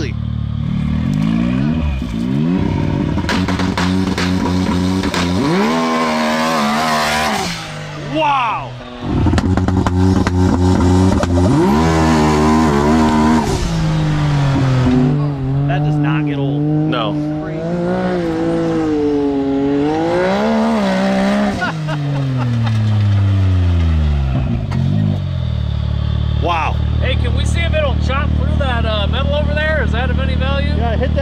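Heavily modified turbocharged three-cylinder engine of a 400 hp Can-Am Maverick X3 revving hard under load through repeated full-throttle pulls. The pitch climbs and drops several times, with a brief dip a third of the way in. Near the end the engine winds down in one long falling sweep and settles to a low idle.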